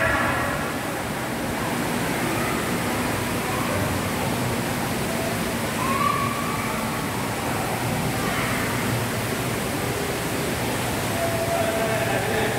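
Steady rushing noise, with faint distant voices now and then.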